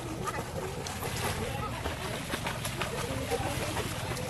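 Swimming-pool ambience: water splashing and sloshing, with many small splashy ticks as a child swims, and children's voices in the background.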